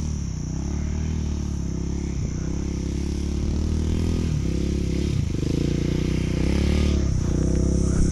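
KTM motorcycle engine running under way, its note wavering with the throttle and dipping briefly several times. The level slowly builds.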